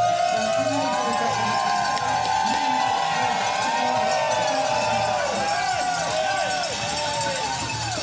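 Crowd of spectators cheering, many voices shouting and whooping over one another without a break.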